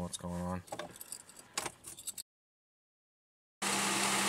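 Keys jangling and light clicks for about a second and a half, after a short murmur from a voice; then a cut to silence, and near the end the steady low hum of an idling engine begins.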